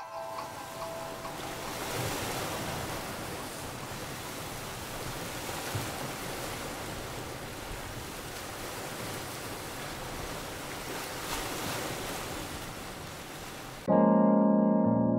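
Steady rush of sea water and wind on open water. A faint musical tone fades out in the first second.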